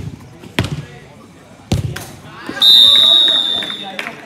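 A couple of sharp thuds of a football being kicked. Then a referee's whistle sounds in one long, steady blast of over a second, signalling a goal.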